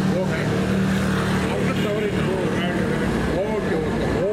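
Busy street ambience: passers-by talking over a steady engine hum from road traffic, with the hum fading out about halfway through.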